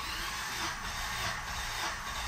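The starter motor of a 2006 Acura RSX cranks its four-cylinder engine over with the spark plugs removed, during a compression test on cylinder three. It gives a steady cranking whir with no firing.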